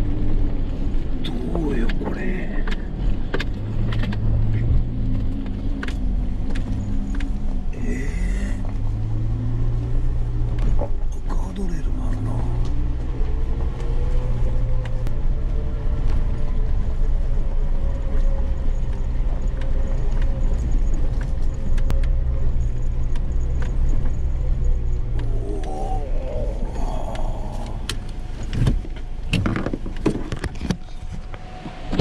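Suzuki Jimny JB64's small turbocharged three-cylinder engine running at low speed on a gravel forest track, heard from inside the cabin. The engine note rises and falls gently, over frequent clicks and knocks from stones under the tyres and the body jolting.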